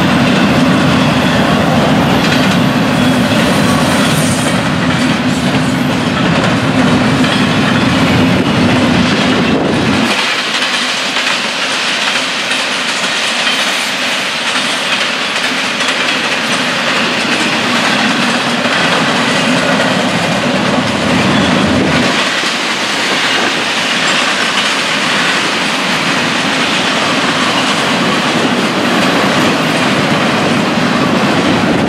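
Long Florida East Coast Railway double-stack intermodal freight train rolling past, its well cars passing steadily and without a break. A heavier low rumble runs through the first third and comes back near the end.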